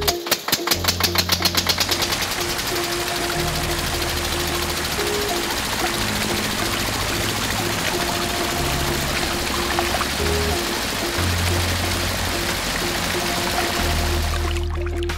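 Background music with a repeating bass line, over a small motor on a toy tractor spinning up: rapid clicks that quicken during the first two seconds and merge into a steady whir.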